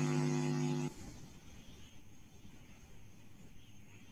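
A steady electrical hum that cuts off suddenly about a second in, followed by near silence.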